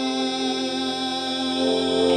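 Great Island Mouthbow sounding one steady held drone note, with a rich stack of overtones wavering above it, in live music.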